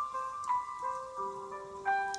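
Instrumental song intro: a slow keyboard melody of clear, held notes sounding one after another.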